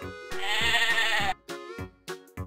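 A sheep bleating once, a single quavering baa lasting about a second, over background children's music with a steady beat.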